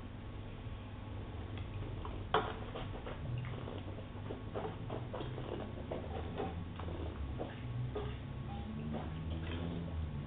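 Mouth sounds of wine tasting: a sip, then small irregular wet clicks and smacks as the wine is worked around the mouth, over a low steady hum. A sharp knock about two and a half seconds in is the wine glass being set down on the wooden table.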